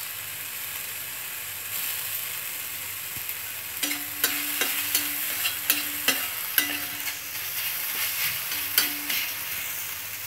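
Scrambled egg with onion and tomato frying in a black kadai: a steady sizzle throughout. From about four seconds in, a steel spatula scrapes and taps against the pan roughly twice a second as the mixture is stirred.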